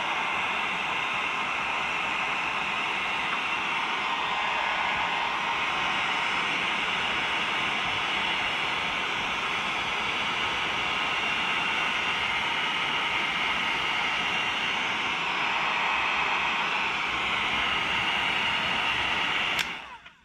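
Electric heat gun running steadily, its fan blowing hot air onto the end of a rubber air hose to soften it. It is switched off and cuts out suddenly near the end.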